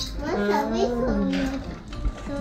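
A toddler's voice babbling, without clear words.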